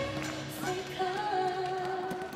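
Arena PA playing the close of a pop cheer song: the heavy beat drops out at the start and a sung note is held from about half a second in.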